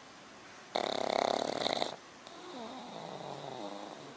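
Pug snoring while lying relaxed: one loud snore lasting about a second, then a quieter, longer breath whose pitch wavers.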